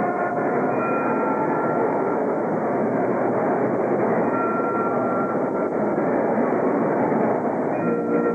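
Steady crowd noise from a gymnasium audience waiting for the band to play. It comes through a muffled old videotape recording, with a couple of faint held notes.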